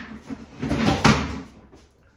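A chair falling over: a scuffling clatter that ends in one sharp thud about a second in.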